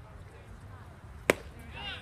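A baseball pitch popping into the catcher's leather mitt: one sharp smack a little past halfway through.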